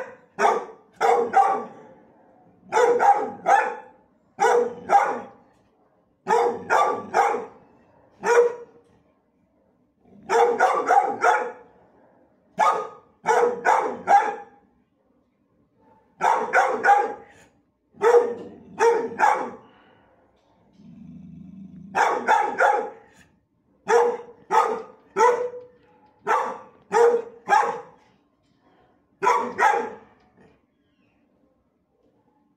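Dogs barking in a shelter kennel block, in quick clusters of two to four sharp barks, one cluster every second or two.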